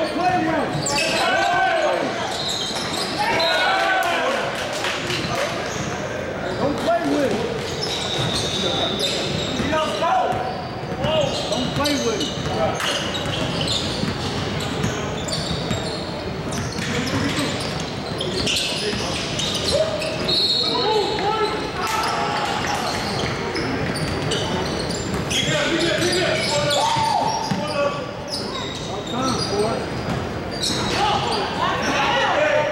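Basketball game in a large gym: the ball bouncing on the hardwood court, a few short high sneaker squeaks, and players' voices calling out, all echoing in the hall.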